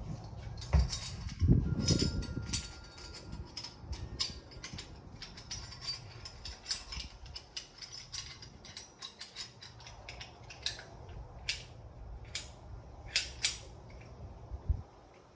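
Irregular metallic clicks and ticks of hand tools and parts being worked on at a dirt bike's handlebar controls during a throttle fitting, with a few heavier knocks in the first couple of seconds.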